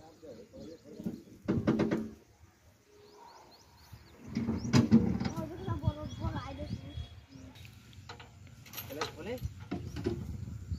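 Steel tailgate of a tractor trolley being unlatched and swung down, with a sharp metal clank about five seconds in, amid men's voices.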